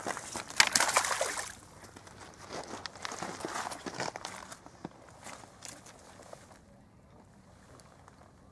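Crunching and splashing on a rocky river bank: a loud cluster of rustling, crunching noise about half a second in, then lighter footsteps and clicks on stones that die away about two-thirds of the way through.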